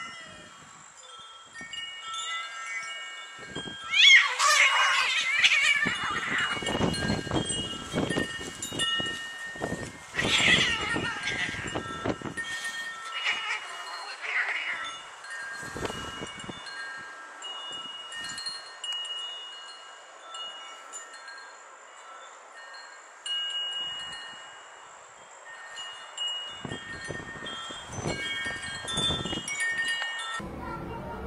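Cats yowling and screeching in a fight, loudest in bursts about four seconds in and again around ten to fifteen seconds, over wind chimes ringing at several pitches throughout.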